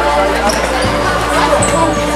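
A football being kicked and bouncing on a sports-hall floor: a couple of dull thuds that echo in the hall, heard over voices and music.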